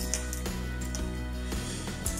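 Quiet background music, a steady held chord, with one faint click right at the start.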